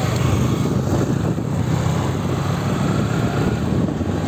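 Motorcycle engine running steadily while being ridden, mixed with a steady rushing road and wind noise.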